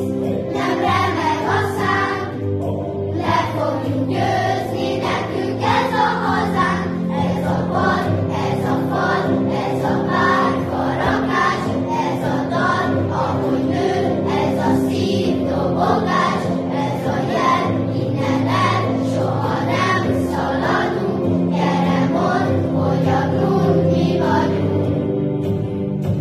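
A primary-school children's choir singing a song in Hungarian together, over an instrumental accompaniment.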